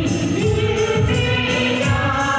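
A choir or congregation singing a gospel hymn together, over a steady beat with tambourine jingles.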